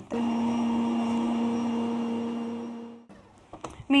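Electric stand mixer running with a steady motor hum as it whisks cream cheese frosting (cream cheese, butter and powdered sugar), then winding down and stopping about three seconds in.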